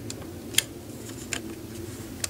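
A handful of small, sharp plastic clicks and taps, the loudest about half a second in, as a black plastic trim piece is pressed into place on the back of a steering wheel. A faint low hum lies underneath.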